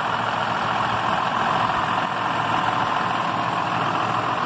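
John Deere 6150R tractor's six-cylinder diesel engine idling steadily.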